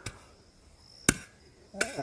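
A single sharp knock about halfway through: a steel shovel blade striking hard, stony ground. A faint high insect trill runs underneath.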